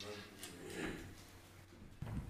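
Faint voice away from the microphone and light handling noises at a wooden lectern as papers are gathered up, in a quiet hall.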